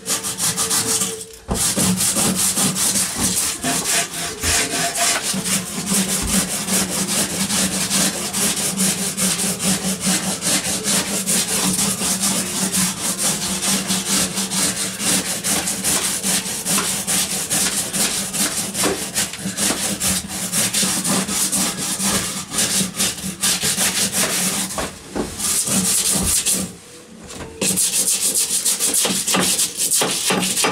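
Rapid, continuous scraping of an old wooden beam with a hand tool, stripping away its crumbling, dusty surface wood, with a steady low hum underneath. The scraping pauses briefly twice near the end.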